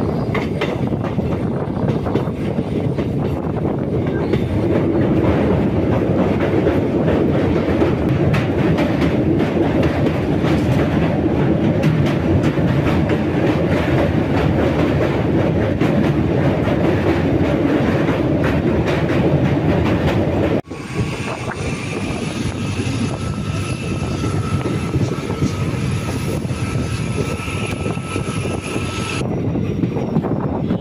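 Passenger train running at speed, heard from an open coach doorway: wheels rumbling and clacking on the track, with wind. About two-thirds of the way through, a high steady squeal of wheels or brakes joins the running noise as the train slows for a station, and it stops shortly before the end.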